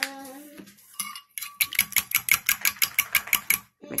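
Metal fork beating eggs in a ceramic bowl: a fast, even clinking of the fork against the bowl, about seven strokes a second. It starts about a second and a half in and stops just before the end.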